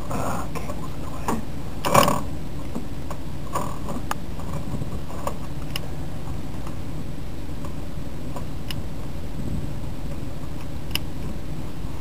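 Ratchet wrench working a fitting on an oil filter mount: a few scattered clicks, the sharpest about two seconds in, over a steady low hum.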